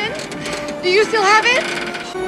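Voices from a film soundtrack, calling out with rising pitch, over a few steady held notes.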